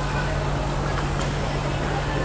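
Cotton candy machine running: a steady motor hum and whir from its spinning head, with faint voices behind it.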